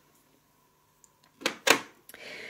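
Glass perfume bottle set down on a mirrored glass tray among other bottles: two sharp knocks close together about a second and a half in.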